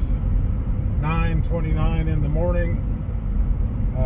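Steady low road and engine drone inside the cabin of a moving car, with a man's voice talking over it for a couple of seconds about a second in.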